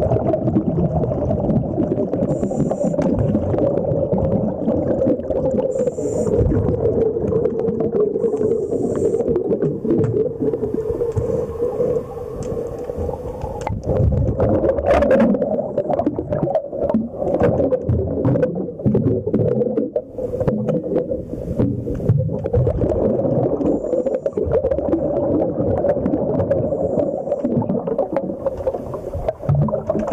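Underwater sound picked up by a diver's camera during hull cleaning: a steady low drone with many small clicks and knocks throughout, and short hissy puffs every few seconds early on.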